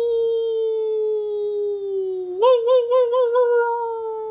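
A man's voice holding one long, droning vocal note in a mock meditation chant, slowly sinking in pitch. About two and a half seconds in, it breaks into a quick wavering warble for about a second, howl-like, then settles back to the steady note.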